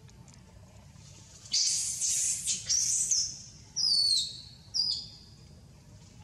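A bird calling loudly: a noisy, high-pitched burst of notes lasting over a second, then two separate sharp whistles that fall in pitch.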